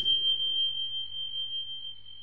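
A single high, pure ringing tone, held steady and slowly fading with a slight waver: the ring-out of a chime sound effect on an animated end card.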